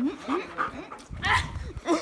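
Dog whining and yipping in a series of short rising cries while play-mouthing at a hand, with a louder rustle of handling about a second in.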